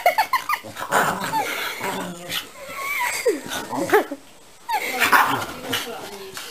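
A Staffordshire bull terrier yipping and whining: a quick run of short high yips at the start, then scattered whines and yaps.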